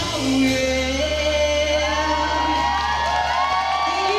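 A woman singing the final held note of a slow R&B song over a sustained closing chord from the backing track, with audience whoops and cheers starting to rise over it in the second half.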